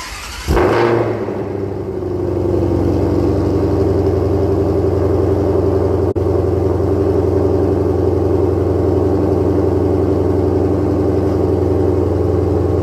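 2022 Ford Mustang Shelby's V8 cold-starting: a brief crank, then the engine catches about half a second in with a loud flare of revs and settles into a loud, steady cold idle through the quad exhaust.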